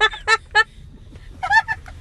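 A woman laughing in short, high-pitched bursts: three quick ones, a pause, then two more about a second and a half in.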